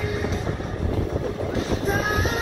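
Wind buffeting the microphone as an uneven low rumble, with faint music and crowd voices underneath.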